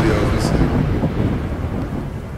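Cinematic logo-reveal sound effect: a deep, thunder-like rumble that slowly fades out, with a brief hiss about half a second in.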